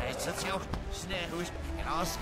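Animated film soundtrack played backwards: reversed voices and shouts, with bending pitch lines, over reversed sound effects and music.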